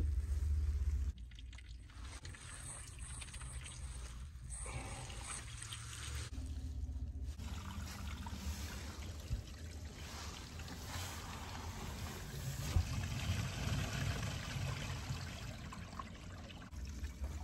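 Water trickling through a PVC drain line, a steady wash of running water. A low rumble fills the first second.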